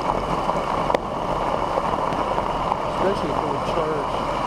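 Voltbike Yukon 750 fat tire electric bike rolling over a gravel road with wind on the microphone: a steady low rushing noise, with one sharp click about a second in.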